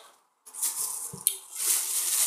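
Clear plastic wrapping crinkling and rustling as it is pulled and stretched off a stack of trading cards, with a short sharp click and a soft thump a little past the middle.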